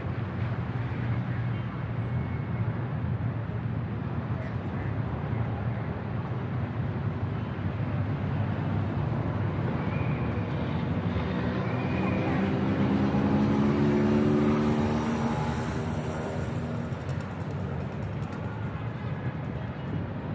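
City street traffic with voices. A vehicle engine drones as it passes, louder a little past the middle, then fading away.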